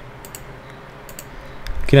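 A few faint, short clicks at a computer, from the mouse and keys used to work a web editor, over quiet room tone.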